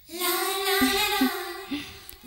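Background music: a high singing voice holds one long, steady note, with a few shorter lower notes beneath it.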